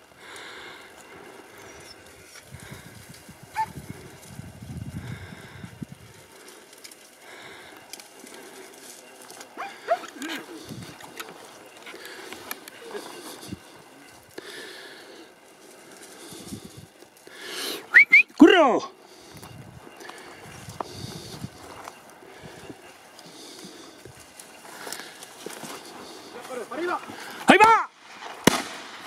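Faint outdoor background with scattered small rustles, broken about eighteen seconds in by a loud shout that falls in pitch. Another call starts near the end.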